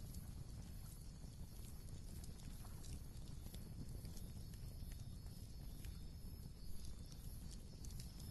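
Faint crackling of a wood fire: scattered small pops and ticks over a low, steady rumble.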